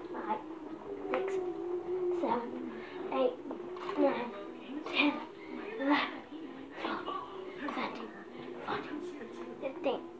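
A person's voice in short calls about once a second, over faint background music.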